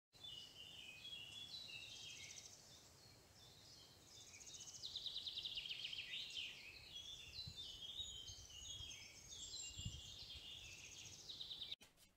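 Birds singing: a faint chorus of overlapping chirps, short whistles and rapid trills, cutting off abruptly just before the end.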